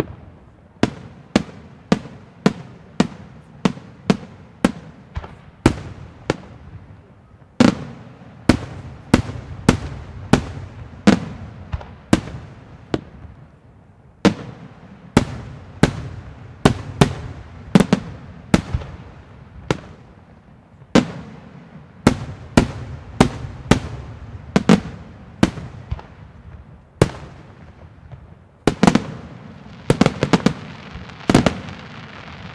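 Aerial firework shells bursting overhead in a steady run of sharp bangs, about two a second, with brief lulls. A quick cluster of bangs comes near the end.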